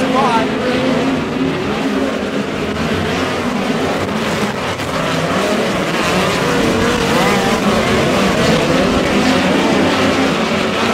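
Several midget race cars' engines running hard on a dirt oval, their pitch rising and falling as they accelerate through the turn and pass by.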